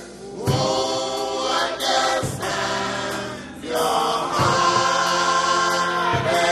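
Choir singing gospel music, with a few sharp percussive hits.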